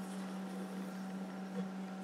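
Faint, soft swishing of a large knife blade drawn along a leather-faced wooden strop bat, over a steady low hum.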